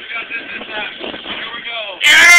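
Indistinct voices talking quietly over a low, steady background noise.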